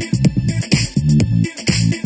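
Electronic dance music from a DJ mix: a steady beat with a repeating bass line and regular cymbal hits.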